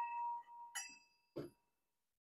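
Small brass bell ringing out and fading slowly after a strike, several clear tones dying away together. Two brief faint noises come around the middle.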